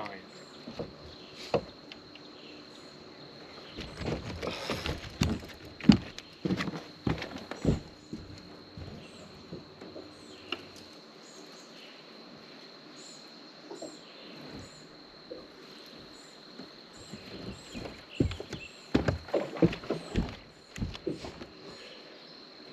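Scattered knocks and clicks of someone moving about and handling rod and reel on a bass boat's deck, in two busy spells, about four seconds in and again near the end. A steady high-pitched hum runs underneath.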